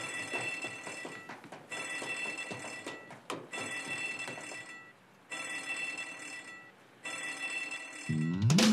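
Electric alarm bell ringing in repeated bursts of just over a second with short gaps, a ship's alarm sounding for a man overboard.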